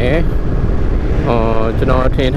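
Steady low rumble of wind and engine noise from a motorbike being ridden along a road, with wind on the microphone, under a person talking.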